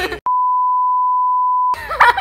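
A single steady, high-pitched censor bleep, about a second and a half long, edited over the soundtrack: all other sound drops out just before it, and it cuts off suddenly as talk resumes.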